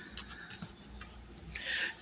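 Quiet handling of a paper notebook: a few faint ticks in the first second, then a brief soft rustle near the end.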